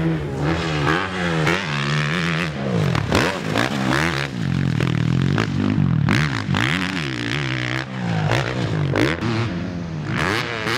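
Suzuki RM-Z450 four-stroke motocross bike ridden hard. Its engine revs climb and drop again and again as the rider goes on and off the throttle and shifts, with short scraping and clattering sounds between.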